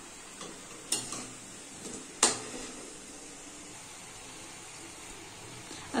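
Hot oil sizzling steadily as semolina medu vadas deep-fry in a kadhai, with two sharp clacks of the metal slotted skimmer against the pan, about one and two seconds in.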